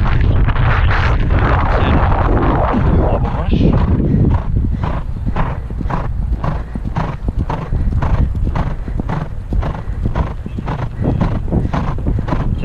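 Hoofbeats of a horse galloping on turf, a regular stride beat about twice a second that is clearest in the second half, over wind rushing on the rider's camera microphone.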